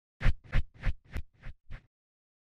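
Intro sound effect for an animated logo: six quick strokes, about three a second, each fainter than the last.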